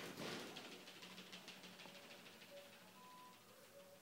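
Near silence: room tone, with a few faint, brief steady tones.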